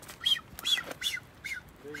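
Male blue-footed booby whistling during his courtship display: a rapid series of about five short, high whistles, each rising and falling, roughly two a second.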